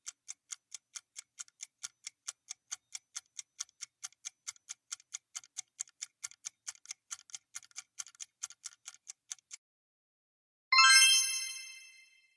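Countdown-timer sound effect: even clock ticking at about four ticks a second, which then stops. About a second later a bright chime rings and fades, marking time up and the reveal of the answer.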